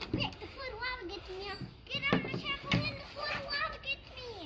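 A young child's high voice chattering and vocalizing in play, without clear words, with a few short knocks.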